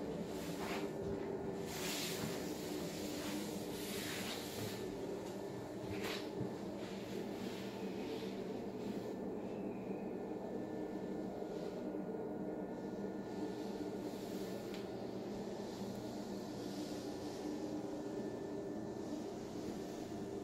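Steady air-conditioning hum in a small, climate-controlled equipment room, with a few faint knocks in the first several seconds.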